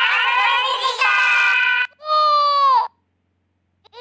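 A high-pitched cartoon character's voice in long, held, sung-sounding phrases. The last phrase ends on a falling note about three seconds in, and a short silence follows.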